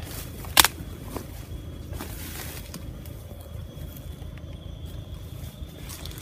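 Footsteps and rustling through cut weeds and leaf mulch, with one sharp knock or snap about half a second in and a softer one a moment later. A thin steady high tone runs underneath.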